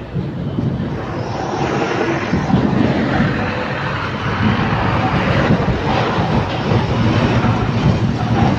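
Motorbike engine running with road noise as a xe lôi cargo cart is ridden, growing louder about a second and a half in.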